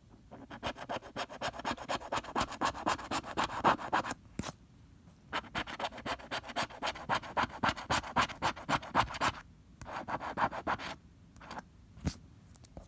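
A pink plastic scratcher tool rasping the scratch-off coating from a paper lottery ticket in quick back-and-forth strokes. It goes in three runs, with short pauses about four and nine and a half seconds in.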